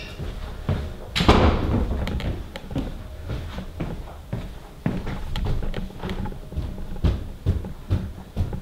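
Footsteps and handling thumps as someone hurries through a house, with one louder thud about a second in.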